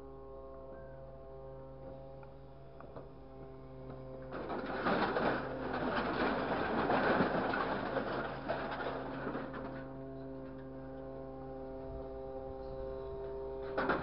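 Grapple truck's engine and hydraulic crane running with a steady hum. From about four seconds in to about ten seconds, loud clattering and scraping as the grapple digs into a pile of scrap metal.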